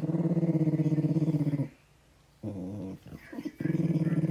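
Small dog growling while being petted: one long low growl, a short one about two and a half seconds in, then another long growl starting near the end.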